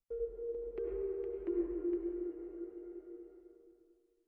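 Short electronic closing music sting: two held tones over a low rumble, with a few sharp ticks early on, that fade out just before the end.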